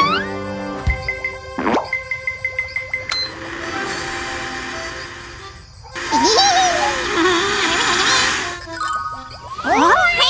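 Cartoon background music with comic sound effects: a sharp plop about a second in, a swooping effect, a run of quick dings, then a louder noisy stretch from about six to eight and a half seconds.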